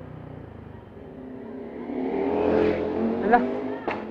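Motorcycle engine sound swelling from about a second in to a peak a little past halfway, then easing off, as a bike comes close by on the street.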